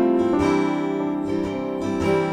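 Acoustic guitar strumming chords in a folk song, with no vocals.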